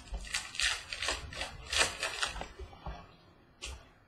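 Baseball trading cards sliding and flicking against one another as a stack is thumbed through by hand: a quick run of rustles over the first two and a half seconds, then a couple of single ones.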